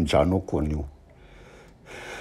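A man preaching in Shona speaks for about a second, then pauses, taking a breath in near the end.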